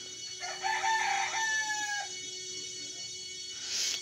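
A rooster crowing once: a single call of about a second and a half, starting about half a second in and dropping slightly in pitch at its end.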